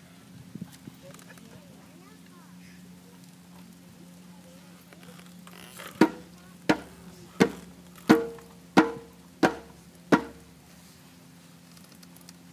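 Seven single hand-drum strikes, evenly spaced about two-thirds of a second apart and starting about halfway in, each with a short pitched ring. A steady low hum runs underneath.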